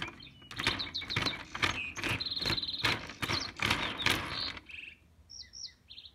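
Wooden alphabet blocks spun by hand on their rods, clattering in rapid knocks for about four and a half seconds, then stopping. Under them is birdsong, with a high trill in the middle and a few short chirps near the end.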